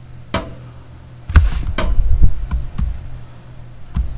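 Scattered clicks and knocks from a computer keyboard and mouse as a web search is entered and the results are scrolled. The strongest knock, with a low thud, comes about a second and a half in. A faint steady high-pitched tone runs underneath.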